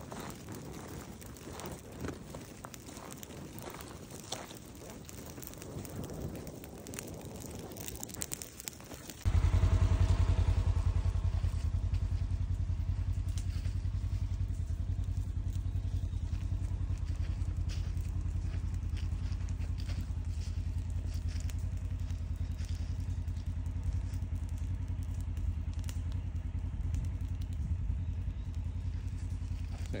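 A drip torch's flame and dry leaf litter crackling and rustling as the leaves are lit. About nine seconds in, a loud, steady low rumble starts abruptly and drowns them out.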